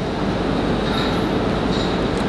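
Steady rumbling noise of a large passing vehicle, with a faint high whine about a second in.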